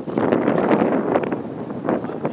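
Wind gusting on the microphone: a loud, rushing noise that swells suddenly just after the start and eases somewhat in the second half.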